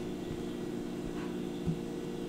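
Steady electrical hum made of several even low tones, with no speech over it. A faint soft thump comes near the end.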